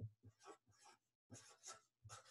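Marker writing on paper: faint, short scratching strokes, with a brief pause about a second in.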